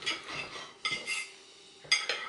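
Knife and fork scraping and clicking against a plate as food is cut, in a few short strokes.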